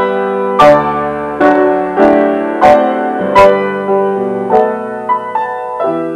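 Piano backing track for a sung folk melody, playing chords struck about once a second and left to ring, without vocals.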